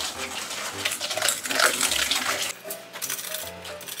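Wire whisk beating rapidly against a stainless steel mixing bowl, a quick rhythmic metallic clinking as egg yolk and sugar are mixed, easing off after about two and a half seconds. Background music plays underneath.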